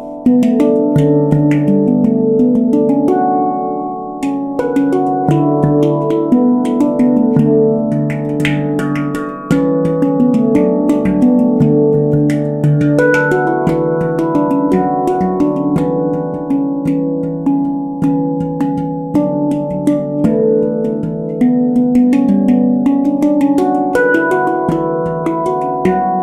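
Avalon Instruments handpan in the D Ashakiran scale played with the hands: a continuous flow of struck, ringing steel notes that overlap, with sharp taps between them.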